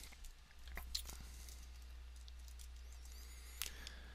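A few faint computer mouse clicks, about a second in and again near the end, over a steady low electrical hum.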